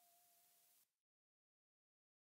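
Near silence: the last faint tail of fading music dies away, then total silence from about a second in.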